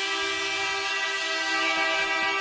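Arena goal horn sounding one long, steady blast to signal a goal scored.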